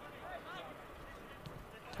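Faint open-air ambience of a soccer match, with a few distant voices calling out on the field about half a second in.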